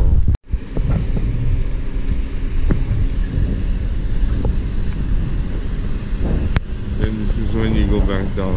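Low, steady rumbling of car traffic alongside, mixed with wind on the microphone of a camera riding on a moving Segway. The sound cuts out completely for a moment just under half a second in, and a sharp click comes near the end.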